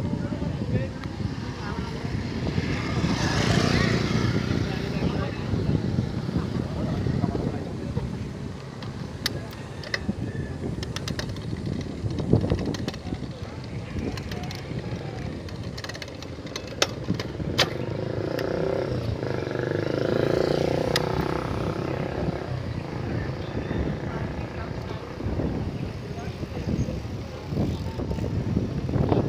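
Wind rumbling on the microphone and road noise during a bicycle ride on a paved road, swelling twice as motor traffic passes, with a few sharp clicks in the middle.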